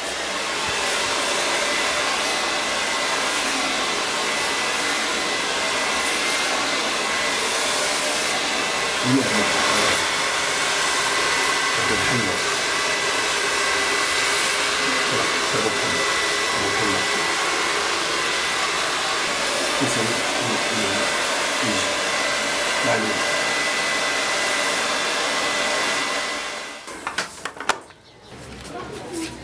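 Handheld hair dryer blowing steadily with a thin, steady whine, switched off near the end.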